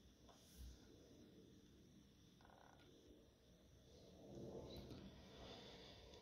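Near silence: room tone, with a faint low murmur about four seconds in.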